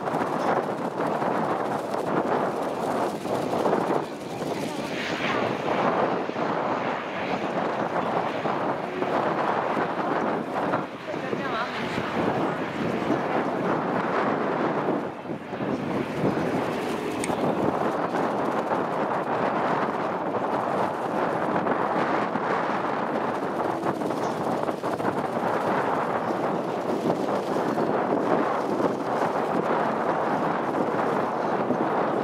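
Cessna 208B Grand Caravan's single Pratt & Whitney PT6A turboprop running as the aircraft taxis, with steady wind noise on the microphone.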